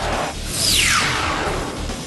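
Broadcast transition sting: music with a whoosh that sweeps down in pitch about half a second in.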